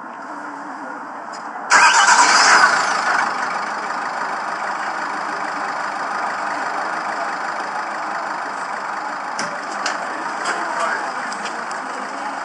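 Car engine starting with a sudden loud rush about two seconds in. It then settles into a steady running noise.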